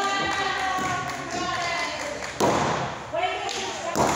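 Raised voices shouting in a large hall, drawn-out and continuous. A sharp thud lands about two and a half seconds in, with another near the end.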